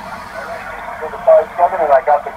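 Speaker of an HF amateur radio transceiver tuned to 20-metre sideband: a hiss of band noise, then about a second in a distant station's voice comes through, thin and narrow beneath the static.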